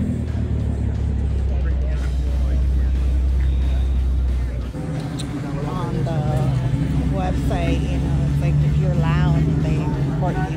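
A car engine idling with a steady low rumble, which cuts out a little before halfway. From then on a song with a singing voice plays over a steady hum.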